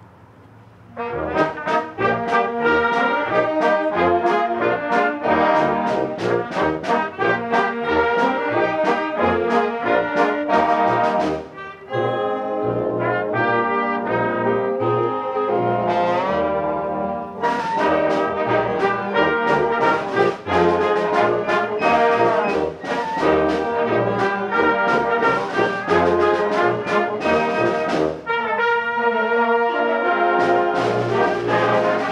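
Concert band of brass, woodwinds and percussion playing a piece with many short accented notes, the brass to the fore. The band comes in after a brief pause about a second in, and thins out briefly near the middle.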